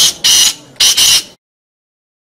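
Black francolin (kala teetar) calling: a few loud, harsh, high-pitched notes in quick succession, cutting off abruptly about a second and a half in.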